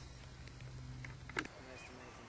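Quiet pause with a faint steady low hum, broken about a second and a half in by a single short, sharp click.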